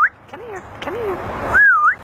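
African grey parrot whistling a dog-calling whistle: a loud whistle that rises, dips and rises again at the start and once more near the end, with two short, softer, lower calls in between.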